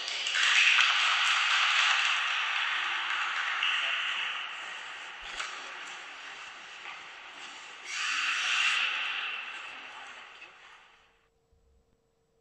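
Audience applause after a figure-skating programme. It swells just after the start, eases off, rises in a second wave about eight seconds in, and dies away near the end.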